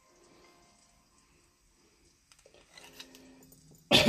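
A quiet room with faint steady tones, then near the end a single sharp knock as a ring-sizer mandrel is set down on the table.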